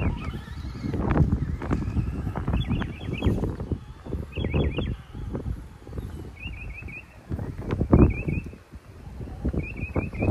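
Wind buffeting the microphone in gusts, with a bird's short high chirps in quick runs of three to five notes every couple of seconds.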